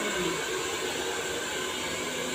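Hand-held hair dryer blowing steadily as it dries a man's short hair.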